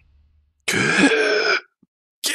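A man's strained, choked voice drawing out the word "get" for about a second, after half a second of silence.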